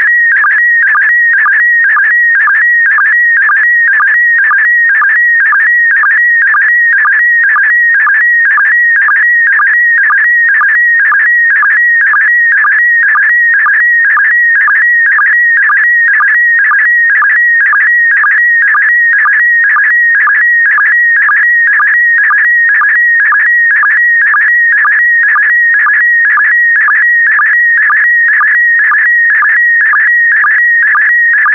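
Slow-scan TV signal in PD120 mode, sending an image line by line: a loud, high warbling tone whose pitch shifts with the picture's brightness, broken about twice a second by a short lower sync pulse that marks each new pair of image lines.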